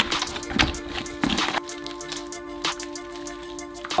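Background music over wet squelching of a gloved hand kneading soft clay paste in a plastic bucket, several squishes in the first second and a half.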